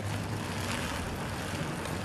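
Steady outdoor background noise: an even hiss with a faint low hum beneath, and no distinct events.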